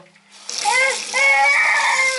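Tap water running and splashing into a bathroom sink basin, starting about half a second in, with a small child's voice sounding over it.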